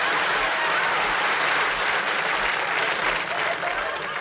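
Studio audience applauding after a punchline, the applause easing off slightly near the end.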